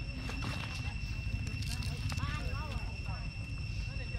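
A quick run of short chirping animal calls a little past the middle, over a steady high-pitched whine and a few light clicks.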